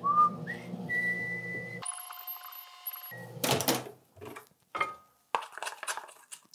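Microwave oven running with a low steady hum and a high electronic tone over it. About two seconds in the hum gives way to a short whistling music sting, followed by a clunk at about three and a half seconds and a few light clicks.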